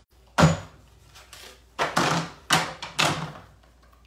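Sizzix Big Shot die-cutting machine being hand-cranked, its platform carrying a 3D embossing folder through the rollers: four noisy, grinding strokes of the crank, each under half a second.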